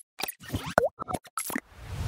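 Cartoon-style plop and pop sound effects of an animated TV channel ident: about half a dozen short pops in quick succession, one gliding down in pitch about midway.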